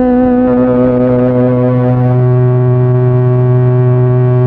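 Casio MT-100 electronic keyboard holding a sustained, droning chord of steady notes. A low bass note comes in about half a second in and one of the upper notes shifts about two seconds in.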